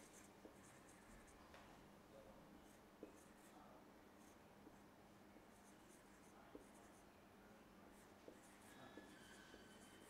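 Faint sound of a marker pen writing on a whiteboard: a run of short stroke sounds with a few light taps as the pen meets the board.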